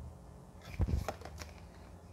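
Tarot cards being handled and laid down on a tabletop: a few sharp clicks and taps with a low thump, bunched together about a second in.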